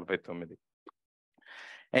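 A man's speaking voice ends a phrase, then a short pause with a faint click, then a soft breath just before he speaks again.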